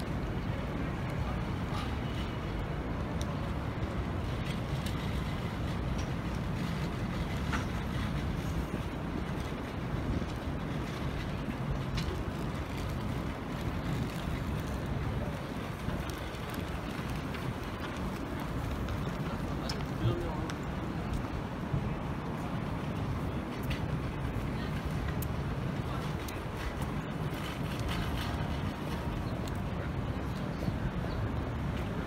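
Busy city-street ambience: a steady low rumble of traffic with passers-by talking and scattered short knocks and clatters, the sharpest about twenty seconds in.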